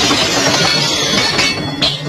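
Martial-arts film fight soundtrack: a loud, steady rushing noise of sound effects with music underneath.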